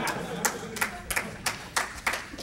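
A few scattered handclaps from the audience, about six sharp claps spread unevenly over two seconds, in a large hall.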